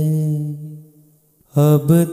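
A singer's voice holds the last note of a line of a devotional shabad, which fades away within the first second. After a brief near-silent pause, the next sung line begins about a second and a half in.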